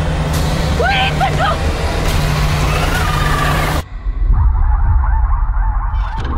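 Horror trailer sound design: a loud, dense wash of noise over a low drone, with shrill wavering cries rising and falling through it. It cuts off suddenly a little before four seconds in, leaving a low rumble with fainter cries.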